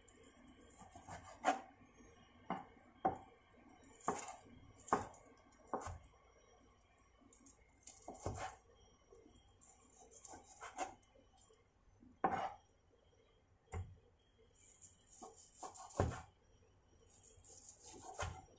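Kitchen knife cutting tender, pressure-cooked beef offal on a plastic cutting board: irregular sharp knocks of the blade striking the board, roughly one every second or so, with soft slicing in between.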